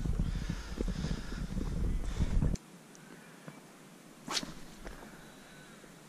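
Rustling, handling noise close to the microphone with a low rumble, cutting off suddenly after about two and a half seconds; then a single quick swish of a spinning rod being cast, about four seconds in.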